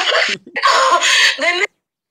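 A woman's loud crying wail, in two strained bursts, that breaks off abruptly just before the end.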